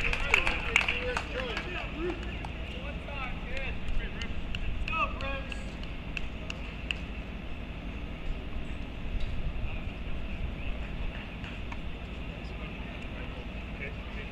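Outdoor tennis-court ambience between points: faint voices in the first few seconds over a steady low rumble, with a few light, scattered clicks.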